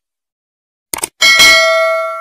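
Subscribe-button sound effect: a quick double mouse click about a second in, then a notification bell ding that rings on and slowly fades.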